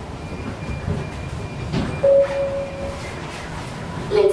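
Low rumble and knocking of people walking along a jet bridge's floor, with a brief steady tone lasting about a second about halfway through.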